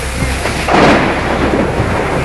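Storm noise from a severe downburst: heavy rain and strong wind gusts. A louder rush of wind and rain begins a little under a second in.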